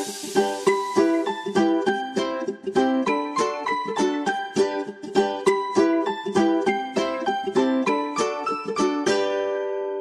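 Upbeat pop background music made of quick, bright notes in a steady rhythm, ending about nine seconds in on a held chord that fades away.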